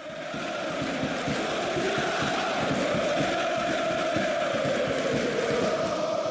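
AEK Athens ultras, a massed stadium crowd, chanting in unison as one steady wall of voices. It swells in over the first second and then holds.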